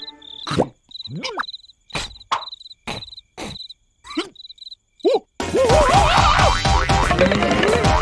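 Crickets chirping in short repeated trills against a quiet night background, broken by a few brief sliding squeaks. A little over five seconds in, busy music cuts in.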